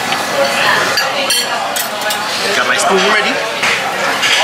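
Metal cutlery clinking against a ceramic plate a few times while cutting into a stack of pancakes, the sharpest clink ringing briefly about a second in.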